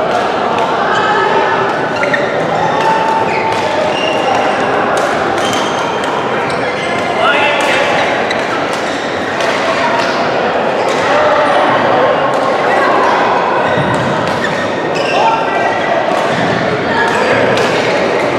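Busy badminton hall: chatter of many players' voices, with frequent sharp, irregular racket hits on shuttlecocks from the courts around, all echoing in the large hall.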